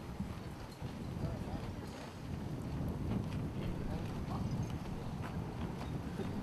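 Gusty wind buffeting the microphone in low, irregular rumbles, with a faint murmur of voices and a few light clicks.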